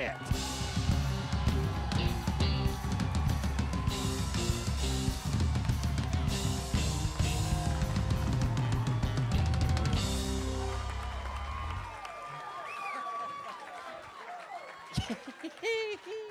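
Live band playing walk-on music with a driving drum kit and bass, which stops about twelve seconds in, leaving crowd noise and shouts.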